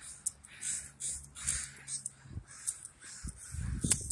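A large flock of crows cawing overhead, many short harsh calls repeating and overlapping, about two or three a second. A low rumble joins in near the end.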